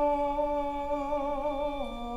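Violin and female voice in a slow duet, holding one long note with light vibrato that steps down to a lower note near the end.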